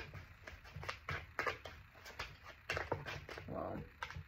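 Tarot deck being shuffled by hand: a run of short, irregular card taps and flicks.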